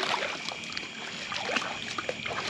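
Shallow water trickling and splashing lightly at the bank as a hooked channel catfish is drawn in through it.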